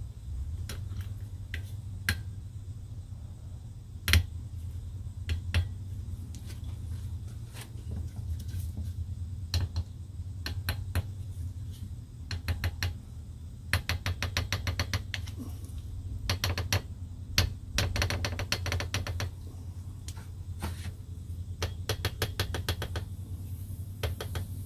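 Side-cutting can opener being cranked around the bottom rim of an aerosol spray can: runs of rapid clicking from the turning gear, with single sharper clicks between, the loudest about four seconds in. The can has not yet been pierced, so no hiss of escaping gas is heard.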